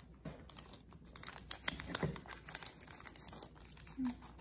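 A foil Yu-Gi-Oh booster pack wrapper crinkling as it is picked up and torn open, with a rapid crackle of small sharp rustles.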